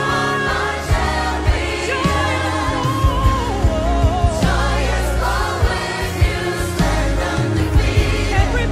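Choir and lead singers performing a gospel praise song live with a full band: voices carry a wavering melody over a steady drum-kit beat with cymbals, bass and electric guitars.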